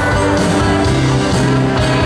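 Live country band playing a song: acoustic and electric guitars, bass, drums and pedal steel guitar.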